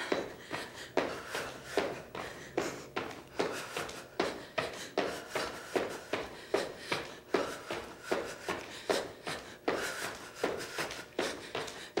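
Feet landing in a steady rhythm of jumping jacks on a hard studio floor, about two soft thuds a second.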